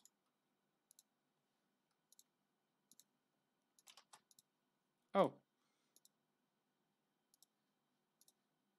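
Faint, sharp clicks of a computer mouse and keyboard, single clicks a second or so apart with a short cluster of several about four seconds in.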